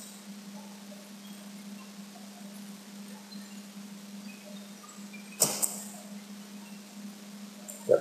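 Pause in a lecture recording: a steady low hum runs underneath, with one short burst of noise about five and a half seconds in.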